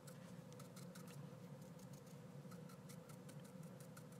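Near silence: room tone with a faint steady hum and scattered faint ticks.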